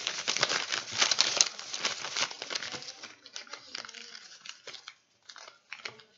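Clear plastic bag crinkling as it is handled, loud for the first two to three seconds, then thinning to scattered light rustles and clicks as paper is handled.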